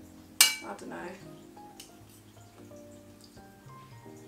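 Metal cutlery clinks sharply once against a ceramic plate about half a second in, over soft background music.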